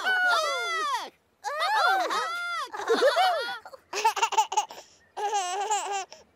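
High-pitched laughter and giggling in several short runs, including a baby's giggle in quick, choppy bursts near the end.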